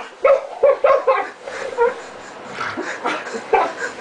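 A person imitating a chicken: a string of short, clucking calls, several in quick succession in the first two seconds and a few more near the end.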